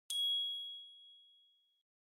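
KOCOWA logo sting: a single bright ding, struck once, ringing in one high tone that fades out over under two seconds.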